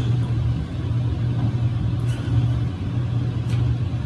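A steady low hum, with a couple of faint clicks.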